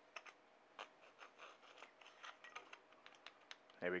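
Faint scraping and scattered light clicks of the microphone's metal parts being handled and fitted together, as the body tube slides back over the circuit board and capsule.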